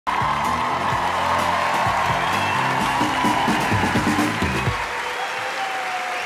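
Show music playing over audience applause; the music ends about five seconds in and the applause carries on.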